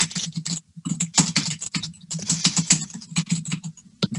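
Typing on a computer keyboard, picked up by a video call's microphone: quick, uneven runs of key clicks broken by brief pauses.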